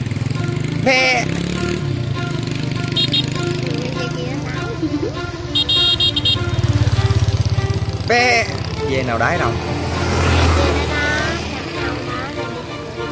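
Goats bleating, two loud wavering bleats about a second in and again after eight seconds, over the steady low running of a motorbike engine.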